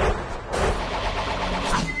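Cartoon whoosh effect of a thrown spinning flying disc rushing away, a steady rushing noise with a brief dip about half a second in.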